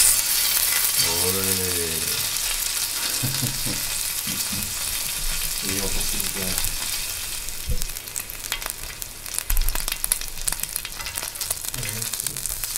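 A slice of marbled Sendai beef triangle rib (sankaku bara) sizzling on the slotted grill plate of an electric hot plate, loudest just as it is laid down and then running on steadily. A few sharp ticks come in the second half.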